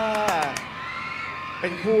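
A few quick hand claps over the end of a long, held vocal "aah" that falls away, then a voice speaking Thai near the end.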